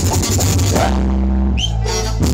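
Live band playing, heard up close. About halfway through, the drums and cymbals drop out for a break, leaving a held bass note and a short rising glide.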